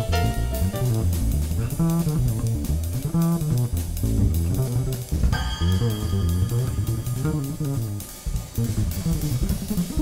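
Jazz trio recording: a plucked double bass plays a busy, fast-moving line, prominent in the mix, over drum kit with steady cymbal strokes.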